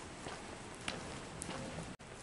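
Faint steady outdoor background noise, with a couple of small ticks about a second in.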